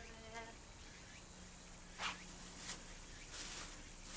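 Faint steady low hum under quiet room tone, broken by a few brief rustling or scuffing noises about two, two and a half, and three and a half seconds in.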